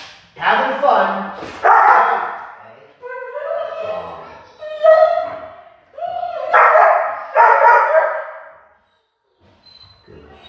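A young shepherd-type dog vocalising in a string of about six high-pitched, drawn-out calls, each up to a second long, with the loudest near the end.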